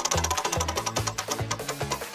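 Upbeat background music with a repeating bass beat, overlaid by the rapid ticking of a spinning prize-wheel sound effect.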